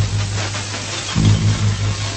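A low electrical buzz that pulses several times a second under a steady hiss of static, starting over with a louder swell a little over a second in: the interference noise of a scrambled TV broadcast signal.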